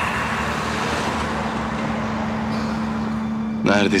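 Road traffic on a street: a steady rush of car engine and tyre noise. A low steady hum runs underneath.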